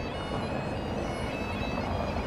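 Bagpipes playing steady held notes over a low background of street noise.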